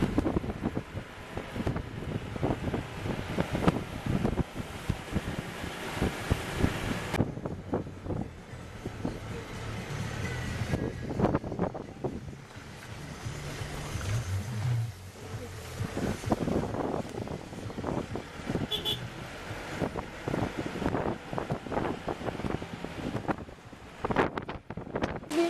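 Vehicle cabin noise on the move over a rough, potholed road: a steady engine and road rumble with frequent irregular knocks and rattles as the vehicle jolts. The noise changes abruptly about seven seconds in.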